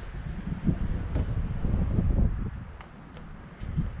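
Wind buffeting the microphone outdoors: a low gusting rumble that eases briefly about three seconds in.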